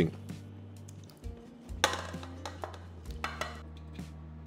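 Soft background music with held low notes. Short clattering noises of raw potato wedges being tipped from a metal tray come about two seconds in and again a little past three seconds.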